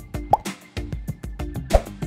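Background music under a glitch-style transition sound effect: a quick run of clicks with two short upward blips, one about a third of a second in and one near the end.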